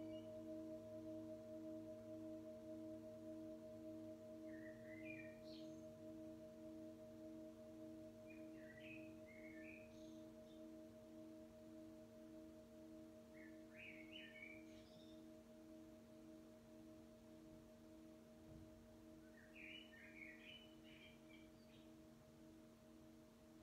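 A metal singing bowl ringing out after a strike, its tone slowly dying away with a steady wavering pulse. Faint high chirps come through a few times.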